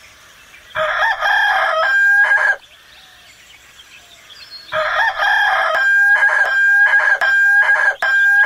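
A rooster crowing twice: one crow about a second in, then a longer one from about halfway, each ending on a held high note.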